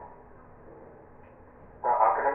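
A pause in a man's speech: faint room noise with a thin steady hum, then his voice starts again near the end.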